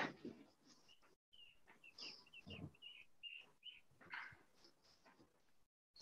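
Near silence over a video call, with a run of faint, short, high chirps in the first half.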